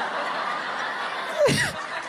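Comedy club audience laughing, an even spread of many voices. About a second and a half in, one short, louder laugh falls in pitch close to the microphone.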